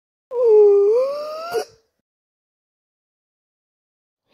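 A high-pitched cartoon character's voice wailing once for about a second and a half. The pitch dips, then rises, and the voice cuts off abruptly.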